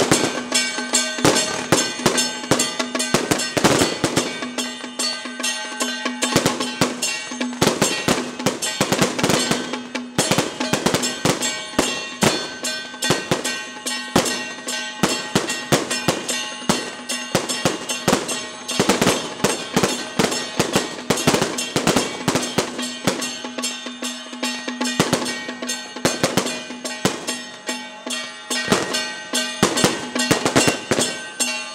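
Taiwanese temple-procession percussion: hand gongs, drum and cymbals struck in a fast, dense, continuous clanging rhythm over a steady ringing tone.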